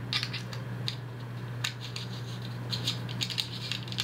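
Light irregular clicks and scrapes of a screw-in variable ND filter being threaded onto a 37 mm filter/lens adapter by hand, over a steady low hum.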